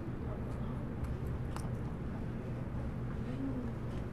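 Steady room hum with faint background voices, and a few short sharp clicks of dissecting scissors cutting into the salmon's body wall behind the pectoral fin, the sharpest about a second and a half in.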